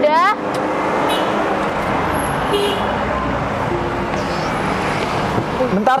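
Steady road-traffic noise from vehicles passing on a busy street. A short rising voice cuts in at the very start, and a shouted word comes near the end.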